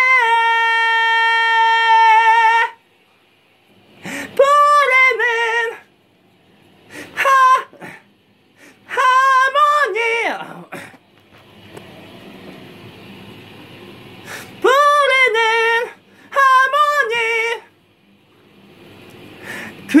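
A man singing unaccompanied in a high register, practising short phrases: a long steady held note in the first couple of seconds, then about five brief sung phrases with wavering pitch, separated by pauses. These are hard high notes that he is straining to sing cleanly, tired after three songs in a row.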